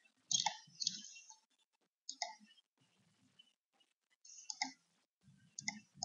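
Computer mouse clicks: a handful of sharp clicks in irregular groups, while Zoom screen sharing is stopped and the end-meeting menu is opened.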